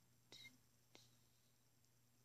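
Near silence: room tone with a steady faint low hum and two faint short clicks, about a third of a second and a second in.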